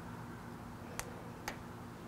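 Rubbery PlastiDip film being picked and peeled off a chrome car emblem by fingers: two faint, sharp ticks about half a second apart, over a low steady hum.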